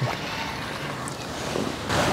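Steady outdoor background noise, an even hiss over a low rumble, with a brief soft click right at the start.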